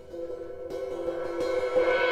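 Sabian AAX Explosion 16-inch crash cymbal struck lightly a few times by hand, its ringing shimmer building in loudness.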